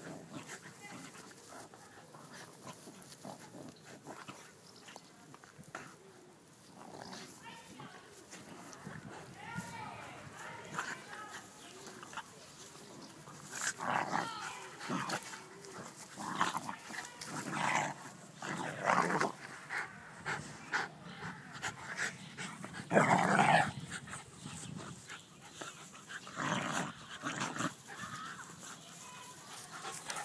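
A miniature schnauzer and a beagle vocalising as they wrestle in play, in a run of short bursts that grow louder partway through, the loudest about three-quarters of the way in.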